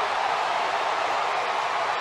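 Ballpark crowd cheering, a steady even noise.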